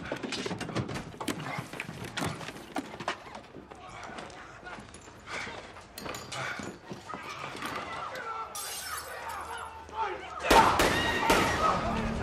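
Broken glass crunching and clattering in a run of short cracks as people climb out of a crashed helicopter and step through the shards, with a louder crash near the end.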